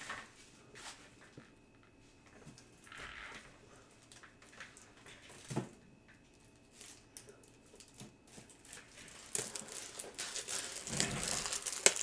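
Faint rustling and handling noises of someone fetching packs of plastic card top loaders, with a single knock about halfway through and louder crinkling of plastic packaging in the last few seconds.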